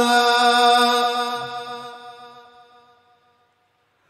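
A male Qur'an reciter holding one long, high note of melodic tilawah recitation into a microphone, which fades out about three seconds in.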